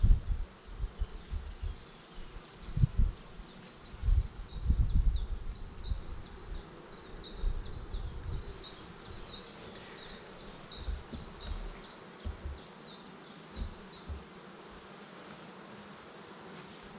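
Honeybees buzzing around an open hive while wooden frames are handled in the box, giving irregular dull knocks and bumps, most of them in the first half. Over this, a high, short, falling chirp repeats about three times a second until near the end.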